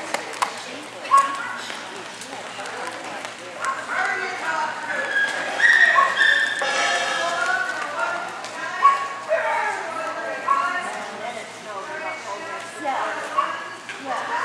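Dogs barking a few times in short sharp bursts over a steady murmur of indistinct voices in a large hall.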